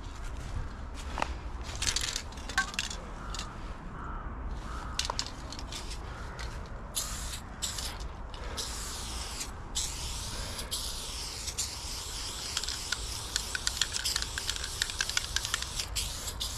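Aerosol spray paint can hissing in short bursts with brief gaps, then in longer, nearly continuous sprays from about halfway through, with quick ticking over the last few seconds.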